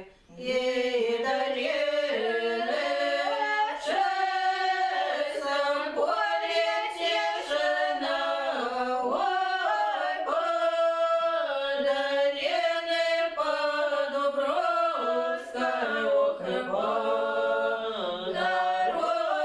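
Women's folk ensemble singing a Russian romance a cappella, several voices together on long held notes, in the singing tradition of the Latgalian Old Believers. A short breath pause comes right at the start.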